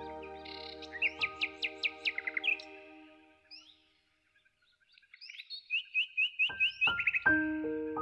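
Songbird chirps laid over soft piano music. A quick run of falling chirps, about five a second, comes as the piano fades out. After a moment of near silence, a short high trill sounds and the piano comes back in with new chords near the end.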